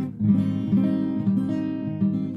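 Yamaha APX 500 II acoustic guitar playing a short run of chord notes and strokes, about five attacks in two seconds, each left ringing.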